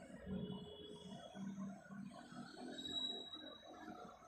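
Faint, indistinct murmur of voices in a room, with a few thin high whistle-like tones, the clearest about three seconds in.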